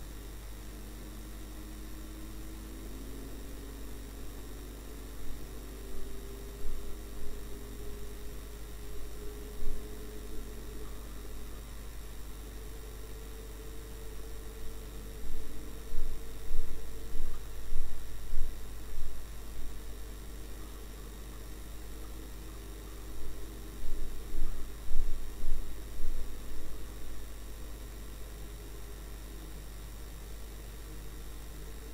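Steady low electrical hum and hiss on the recording, with faint tones sliding up and down in the first half, like a vehicle engine, and three clusters of short, loud bumps.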